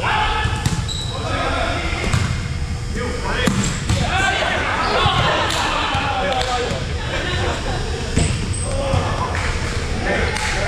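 Volleyball rally in a gymnasium: several sharp smacks of the ball being struck by hands and arms, with players' voices calling out between them, echoing in the large hall.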